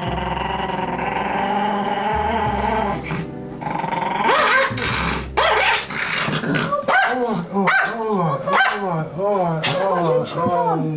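A terrier crying out over and over, a string of rising-and-falling yelps and whines coming about twice a second in the second half, as forceps pull a rusty sliver of metal from its paw. Steady background music plays in the first few seconds.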